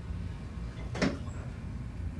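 Quiet room tone with a steady low hum, and one short soft knock about a second in.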